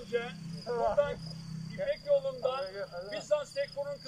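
Crickets chirping steadily in a high, even pulse. Louder people's voices talk over them on and off.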